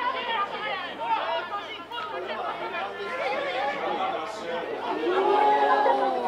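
Overlapping shouts and calls of American football players and sideline teammates on the field, with one loud, long-held shout near the end.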